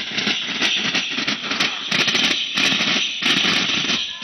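A tappeta gullu troupe playing: hand-beaten tappeta frame drums hit in dense, irregular strokes over a steady jingle of ankle bells, with voices mixed in.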